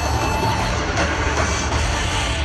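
Live reggae band playing through a large outdoor sound system, with heavy bass, heard from within the crowd.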